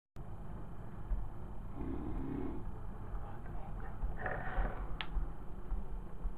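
A person bouncing on a bed: an irregular low rumble of dull thumps from the mattress, with a few short breathy vocal sounds.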